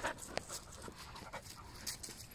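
A dog panting quietly.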